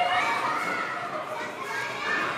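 A group of children talking and calling out over one another, several young voices at once.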